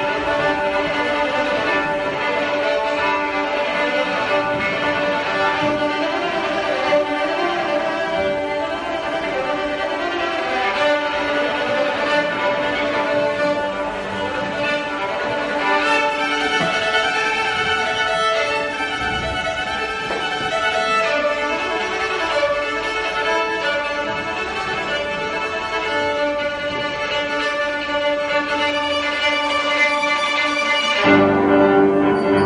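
Violin and grand piano playing a classical duo: a sustained bowed violin melody over piano accompaniment. The violin line grows brighter about halfway through.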